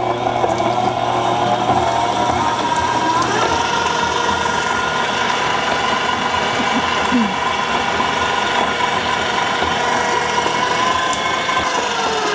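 Breville stand mixer's motor whining steadily as its whisk attachment whips solid coconut cream in a steel bowl. The whine steps up in pitch about three seconds in as the speed rises, holds, then begins to drop near the end.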